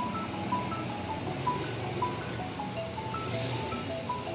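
Background music: a simple melody of short, evenly spaced notes stepping up and down, over a low steady hum.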